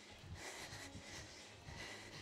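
Faint sounds of a person doing seal jacks: quiet breathing and soft, irregular thuds of bare feet landing jumps on a yoga mat.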